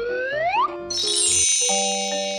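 Magic transformation sound effect: a rising whistle-like glide, then about a second in a bright shimmering chime that rings on. Light background music notes come in near the end.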